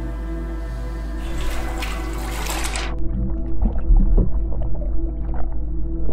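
Background music with a steady drone. A rising whoosh swells from about a second in and cuts off sharply at three seconds. Then water sloshes and trickles in an inflatable ice-bath tub, with a low bump about a second later.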